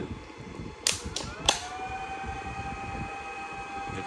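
A 16-FET electrofishing inverter switching on: three sharp clicks about a second in, then a steady whine of several high tones as it runs, quieter than a fan.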